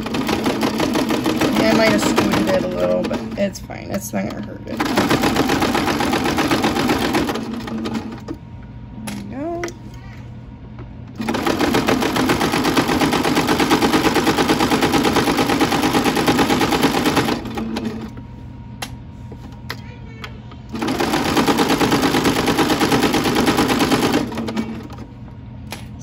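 Singer Starlet sewing machine stitching through layers of fleece in four runs of a few seconds each, with short pauses between them as the fabric is guided.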